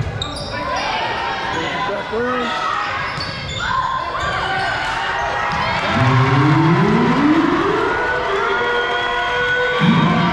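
Volleyball rally in a gym: sharp ball contacts among shouting voices. Then, from about six seconds in, a crowd cheering and yelling with long rising shouts as the set point is won.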